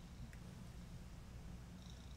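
Domestic cat purring faintly while being petted, a steady low rumble.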